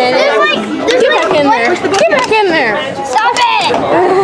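Several people talking at once, unintelligible chatter of voices close to the microphone.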